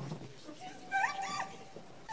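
A woman's high wailing cry, gliding up and down in pitch for about a second in the middle.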